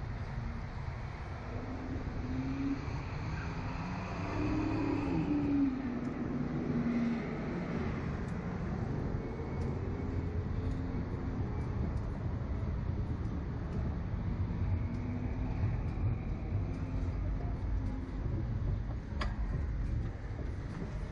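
Steady low rumble of wind buffeting the onboard camera microphone as the SlingShot ride capsule bounces and spins in the open air. A faint hum rises and falls about four to seven seconds in.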